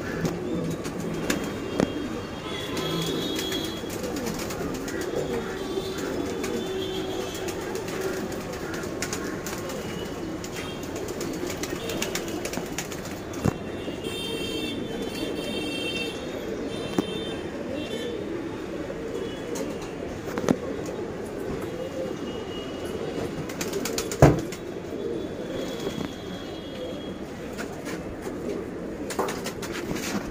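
Domestic pigeons cooing continuously, with a few sharp clicks or knocks; the loudest knock comes late on.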